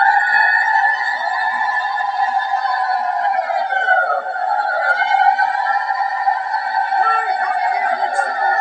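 Several long, slowly wavering tones held together and overlapping, like a siren, from a crowd at a religious gathering.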